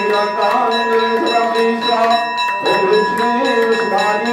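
Devotional singing with long held notes, over a temple bell rung over and over in a steady rhythm, its ringing tones sustained throughout.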